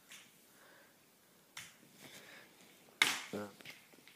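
Metal crutches knocking on the floor in a few sharp separate clicks, the loudest near the end.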